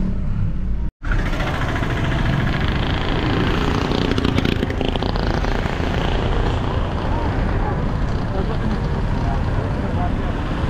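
Steady road and wind noise of a moving car heard through an open window, with street traffic around. The sound cuts out completely for a moment about a second in.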